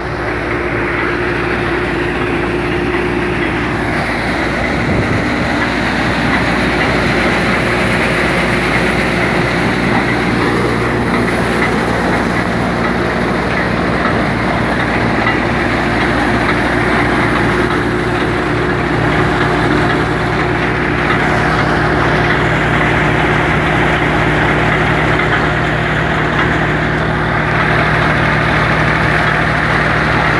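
VST Shakti MT 270 27 hp tractor engine running steadily at working speed, with the continuous loud mechanical noise of the attached implement it is driving.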